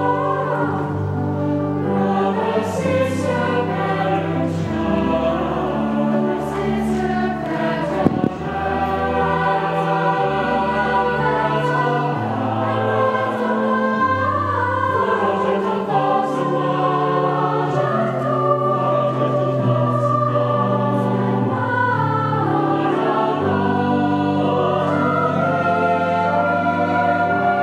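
A church choir singing with pipe organ accompaniment, low organ notes held steady beneath the voices. A single short knock sounds about eight seconds in.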